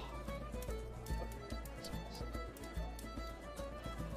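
Quiet background music: held notes with many light, irregular clicks.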